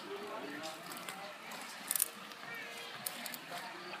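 Faint voices over a quiet outdoor background, with a short crackle about two seconds in.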